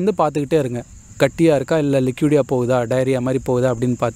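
A voice talking almost without pause, with a steady high-pitched chirring of crickets behind it throughout.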